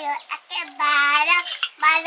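A young girl singing in a high voice, holding long, fairly level notes.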